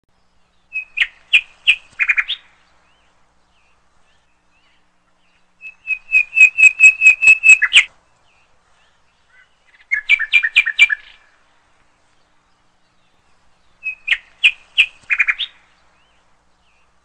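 A bird singing: four short phrases of quick, evenly repeated chirps a few seconds apart. The second phrase is the longest, about two seconds of rapid notes.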